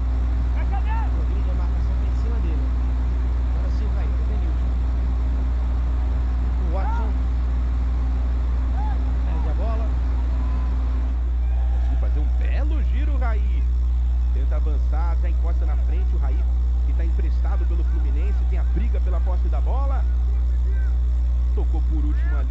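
Football match broadcast ambience: a loud, steady low rumble of field-level sound with scattered short shouts from voices on and around the pitch. The background changes abruptly about eleven seconds in, at a cut to footage of another match.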